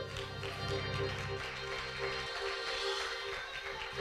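Electric keyboard holding soft sustained chords under the service; the low bass notes drop out partway through, leaving the higher held tones.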